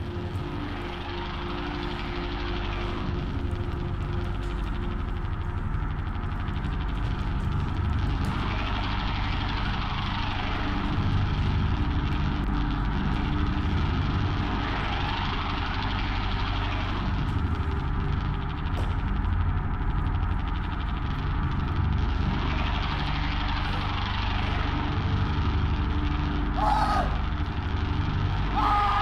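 Droning stage soundscape: a steady low rumble with slow whooshing sweeps that rise and fall every several seconds.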